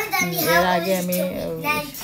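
A child singing, with a note held steady for about a second early on and pitch moving up and down around it.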